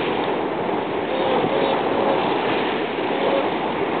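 Steady wind noise rushing across the microphone, mixed with the wash of the sea.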